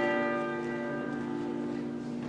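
A bell struck once, its tones ringing out and fading over about a second, over steady held notes of instrumental music.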